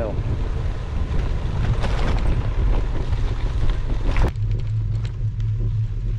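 Wind rushing over the microphone and the rumble of a loaded touring bike's tyres rolling on a gravel road while descending. About four seconds in the sound changes abruptly to a steadier, duller low rumble.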